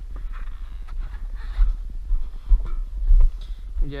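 A person climbing down the steps of a tractor cab and walking on grass: several footfall thuds, about a second and a half, two and a half and three seconds in, over a low uneven rumble.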